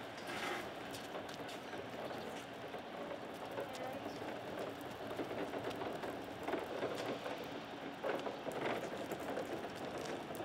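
Casters of a large rolling OSB set wall running over concrete as it is pushed: a steady rough, gritty noise with a few louder knocks in the second half.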